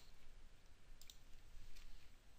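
Faint computer mouse clicks, one about halfway through and one near the end, over low room hiss.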